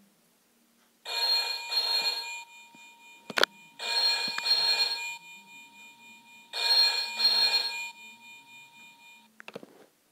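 A Deal or No Deal gaming machine's speaker plays the Banker's telephone ring: three British-style double rings, 'ring-ring', that announce a bank offer. A sharp click falls between the first and second rings.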